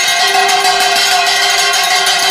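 Metal handbell rung rapidly and without a break, giving a loud, steady ringing with several high metallic tones.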